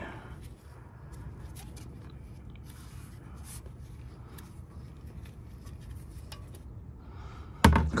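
Faint scattered clicks and taps of a loosened brake hose and its metal fittings being handled, over a steady low background rumble, with one sharper click near the end.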